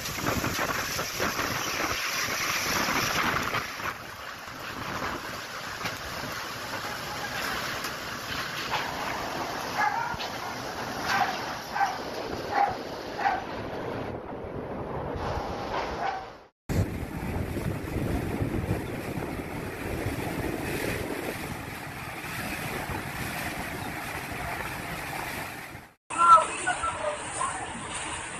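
Typhoon wind and heavy rain: a steady rushing noise that swells and eases with the gusts, with a few short high-pitched sounds in the middle. The sound breaks off for an instant about two-thirds of the way through and carries on from a different recording.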